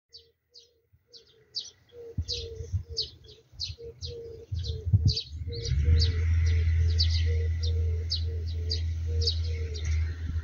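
A small bird chirping over and over, two to three short high chirps a second. A low rumble comes in about two seconds in and is loud and steady from about six seconds on.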